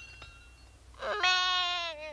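A brief twinkling sparkle effect, then, starting about a second in, a cartoon baby unicorn's bleating cry that lasts about a second and sags slightly in pitch.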